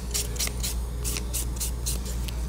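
Sponge nail buffer rubbed back and forth over long acrylic nails in quick rasping strokes, about four a second, over a steady low hum.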